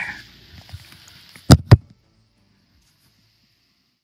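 Rifle shot: two loud, sharp cracks about a quarter of a second apart, after which the sound cuts off abruptly.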